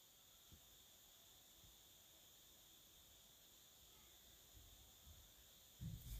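Near silence: faint steady room hiss with a few barely audible light ticks.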